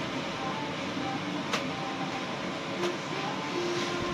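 Steady background noise inside a shop, an even hum with a faint click about one and a half seconds in.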